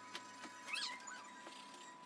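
A faint, short animal cry that bends up and down in pitch, about half a second long, roughly a second in, over a few light pencil scratches on paper and a faint steady high hum.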